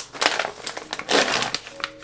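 A plastic protein-powder pouch crinkling as it is handled and pulled open, with two main rustling bursts.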